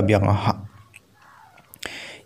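A narrator's voice trailing off at the end of a sentence, then a short pause broken by a mouth click and a breath before speaking again.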